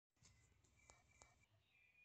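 Near silence, with two faint clicks about a second in.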